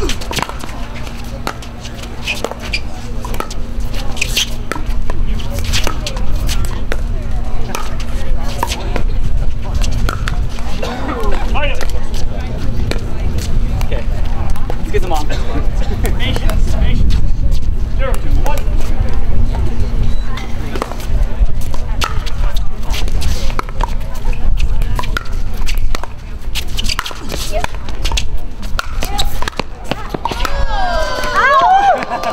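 Pickleball paddles striking the plastic ball in rallies, sharp pops at irregular intervals, over voices in the background and a steady low rumble.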